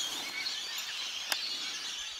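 Quiet outdoor ambience: a soft steady hiss with faint distant bird chirps and one sharp click a little past halfway.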